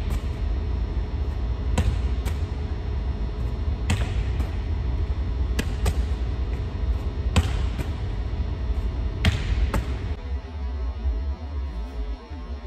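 A volleyball set repeatedly against a cinder-block gym wall: sharp smacks of the ball on the wall and hands, mostly in close pairs about every two seconds, over a steady low hum. The hits stop about ten seconds in.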